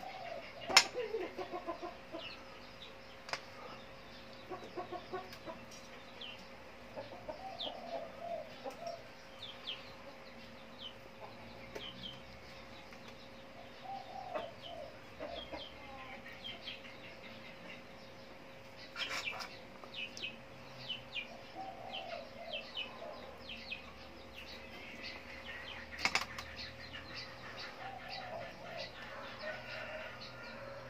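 Chickens clucking in short runs every few seconds, with small birds chirping higher up and a steady faint hum underneath. A couple of sharp knocks cut through, the loudest about a second in and another near the end.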